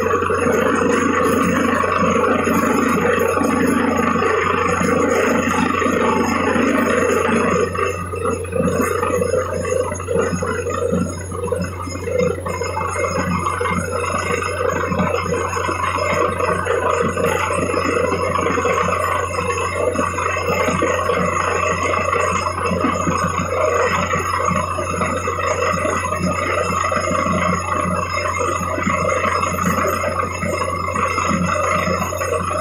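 Borewell drilling rig running steadily under load, with a constant low hum, while water and mud slurry gush out of the bore head. The sound thins and changes in character about eight seconds in.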